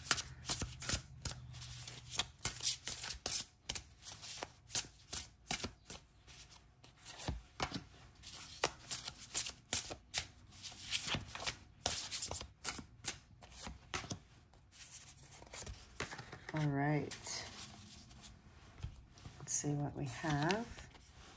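A tarot deck being shuffled by hand, a quick, irregular run of card flicks and taps, with cards dealt down onto a wooden table.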